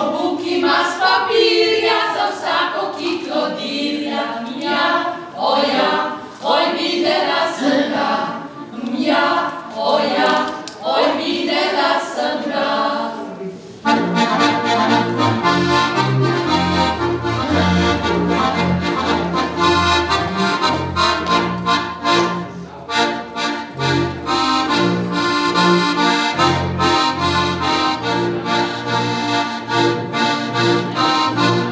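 A group of women singing a folk song unaccompanied. About halfway through this gives way abruptly to diatonic button accordions playing a lively folk dance tune with a steady, rhythmic bass.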